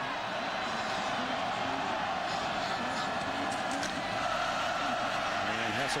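Stadium crowd noise: a steady din of many voices that swells a little over the last couple of seconds as the play gets under way.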